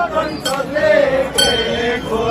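A group of voices chanting in long held notes, with a sharp metallic clink about half a second in and another, ringing briefly, about a second and a half in.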